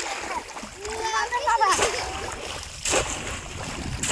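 Water splashing, with two sharp splashes about two and three seconds in, over a steady wash of water noise. A brief high voice call comes about a second in.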